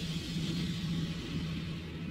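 A steady low drone, one held tone, over an even rushing hiss.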